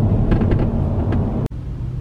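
Steady low road and engine rumble inside a moving car's cabin. About one and a half seconds in it breaks off abruptly and carries on as a quieter cabin hum.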